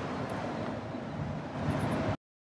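Road traffic from a main road nearby: a steady wash of passing cars, with a brief crackle near the end.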